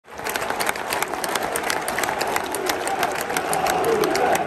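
Football fans applauding in a stadium stand: sharp close hand claps over the steady noise of a clapping crowd.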